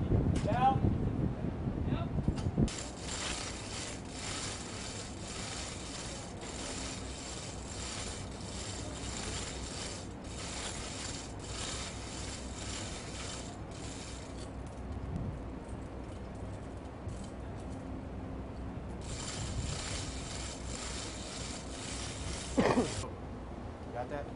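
Manual chain hoist being worked: its ratchet and chain make a fast, steady clicking rattle that eases off around the middle, then picks up again. A few loud metal knocks come in the first couple of seconds, and a single knock comes near the end.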